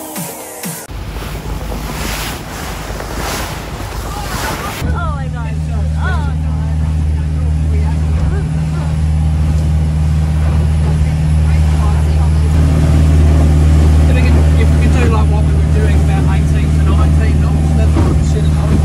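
For the first few seconds, waves wash on rocks with wind on the microphone. Then a Clayton Gallant boat's engine drones steadily and low, heard from inside the enclosed wheelhouse, growing a little louder toward the end.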